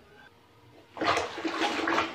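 Clothes being scrubbed and swished by hand in a plastic basin of soapy water, sloshing and splashing in uneven strokes that start about a second in.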